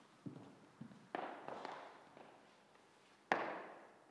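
A few irregular sharp knocks and thuds, each dying away with an echo. One comes just over a second in and the loudest, sharpest one comes near the end.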